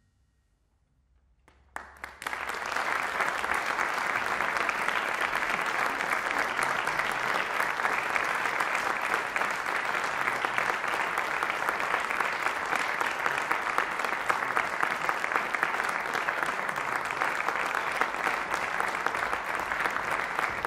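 After a brief hush, audience applause breaks out about two seconds in and continues steadily as a dense patter of many hands clapping.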